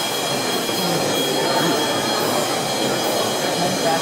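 Steady din of a busy indoor room: a hiss of background noise with faint chatter from distant voices and a thin steady high whine.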